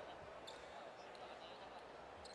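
Near silence: faint, even arena background noise from a basketball broadcast, with nothing distinct standing out.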